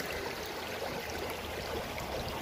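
Shallow stream water running over rocks, a steady rush.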